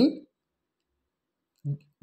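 A man's voice trailing off at the start, then about a second and a half of dead silence, broken near the end by a brief vocal sound just before speech resumes.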